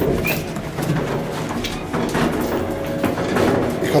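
Worn Thyssen inclined elevator, its cab running and its sliding doors opening at the landing, with scattered knocks over a steady mechanical noise. The elevator is in very bad shape.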